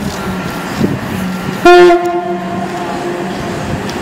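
Train horn sounding a single note about one and a half seconds in, loud at first and then held more quietly for over a second, over a steady low hum.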